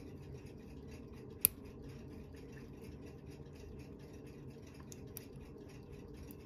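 Steel tweezers working at the balance cock of a pocket-watch movement, pulling at the hairspring's taper pin. There is one sharp little click about a second and a half in and two fainter ticks near the end, over a faint steady hum.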